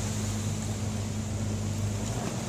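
A boat's engine running steadily, an even low hum.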